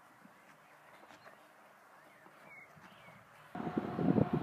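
Faint outdoor ambience, with no clear event, that jumps suddenly to louder outdoor sound with a thin steady tone about three and a half seconds in, where the scene cuts.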